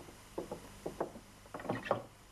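Footsteps and shuffling of several people on a hard floor: a few soft, irregular steps, then a louder, busier cluster near the end.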